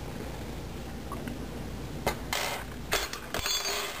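Handling noise from working the yarn close to the microphone: a brief rustle about two seconds in, then a light clink and a short scuffle near the end, over a steady low hum.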